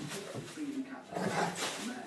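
Weimaraner dogs vocalizing, several short sounds one after another.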